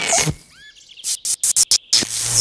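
Cartoon sound effects of a rubber balloon rubbed against a body and charged with static: two short squeaky chirps about half a second in, then a quick run of sharp static-electricity crackles in the second half.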